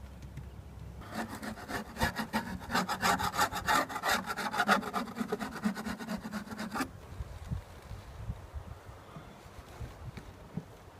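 A metal hive tool scraping a wooden beehive inner cover in rapid back-and-forth strokes, clearing off burr comb and wax. It starts about a second in and stops abruptly a little before seven seconds.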